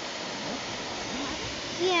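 Steady rushing of a waterfall, an even hiss with no breaks.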